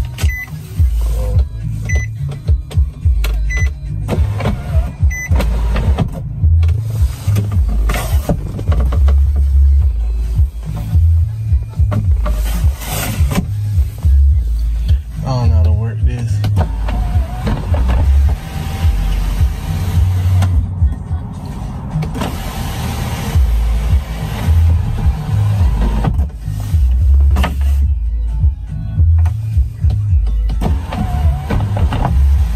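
Power sunroof motor running in stretches as the sunroof is opened and closed from the overhead switch, heard over background music.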